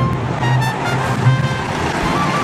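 Wild-mouse roller coaster car rumbling steadily along its steel track through a turn, with music playing over it.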